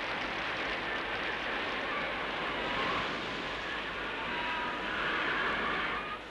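Steady rushing noise of wind and rain.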